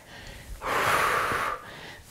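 A woman's single long, heavy breath, starting about half a second in and lasting about a second, drawn from the effort of a squat with dumbbells.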